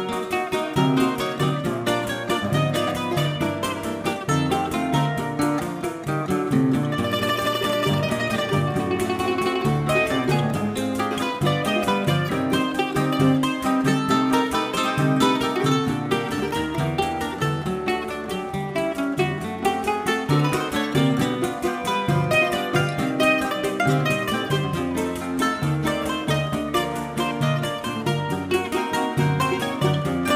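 Choro played live by a small regional ensemble: a bandolim (Brazilian mandolin) plucks the melody over acoustic guitars playing a bass line and chords, at a steady beat.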